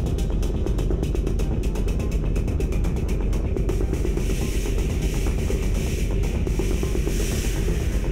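Live electronic noise music: a heavy low drone under a rapid, stuttering click pulse, with a band of hissing high noise swelling in from about halfway and peaking near the end.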